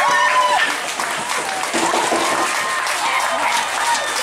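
Spectators clapping, with high-pitched children's shouts and voices over it, strongest in the first half-second.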